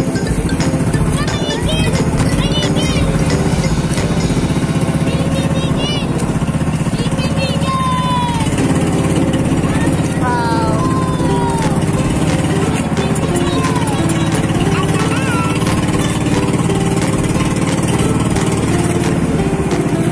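Motorized outrigger boat's engine running in a steady drone as the boat cruises, with voices calling out over it now and then.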